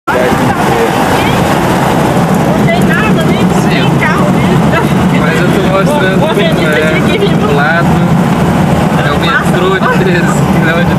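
Car engine running and tyre and road noise heard from inside the cabin of a moving car, a steady low drone throughout, with people talking indistinctly over it.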